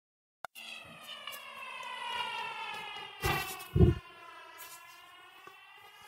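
A siren wailing, one long tone with many overtones that slowly falls and then rises in pitch. A click comes at the very start, and two heavy thumps fall a little past halfway, the second the loudest.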